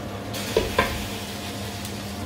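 Onions and tomato paste sizzling in a hot pot of sauce while a wooden spoon stirs, with two sharp knocks against the pot about half a second in.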